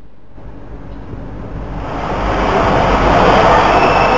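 A steady rushing noise with a low rumble underneath, swelling over the first two seconds and then holding loud.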